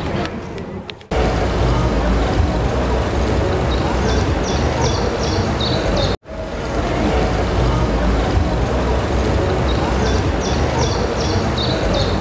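Steady wind rumble on the microphone of a camera riding on a moving bicycle, with music laid over it. The sound starts abruptly about a second in and is broken by a short drop near six seconds.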